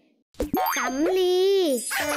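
A cartoon boing sound effect with a quick pitch swoop, then a voice saying the Thai word สำลี ('cotton wool') in a drawn-out voice that falls in pitch at the end.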